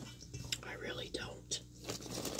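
Faint whispered muttering under the breath, with a few small clicks.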